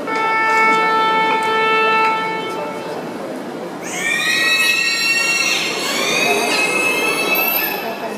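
Dolphins whistling: many overlapping high squeals rising and falling in pitch, starting about four seconds in. Before them, a steady held note sounds for about two seconds, then stops.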